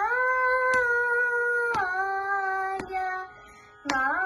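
A young girl singing a Carnatic song in raga Malahari, holding long vowel notes joined by smooth slides. A high held note glides down to a lower one just under two seconds in, and the line breaks off shortly before the end as a new phrase begins.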